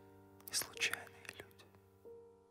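Soft background music with steady held notes, under a few whispered, breathy words of a poem being recited.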